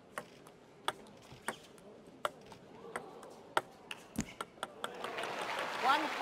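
Table tennis rally: the ball clicking off bats and table roughly every half to three-quarters of a second, the strokes coming quicker near the end of the rally. Applause follows as the point ends, with a short shout in the last moment.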